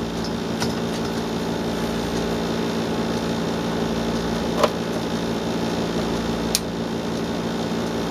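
Steady mechanical hum, with a few light clicks from handling the metal grow-light housing, and a sharp click near the end as the light is switched on.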